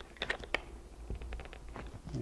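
Light clicks and creaks of a plastic bucket being flexed while a cured flexible urethane foam plug is worked loose and tugged out of it. A few taps come about a quarter second in, then a quick run of small ticks just past the middle.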